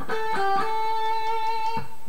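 Electric guitar picking A, G, A on the tenth and eighth frets of the B string, the last A held and ringing for about a second.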